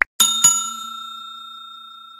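Subscribe-animation sound effect: a click, then two quick bell dings about a quarter second apart that ring on and fade away slowly.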